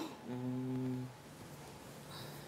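A man hums one short, steady low note, quietly, for under a second.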